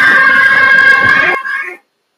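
A group of voices singing or chanting with music, ending on a long held note that cuts off abruptly about a second and a half in.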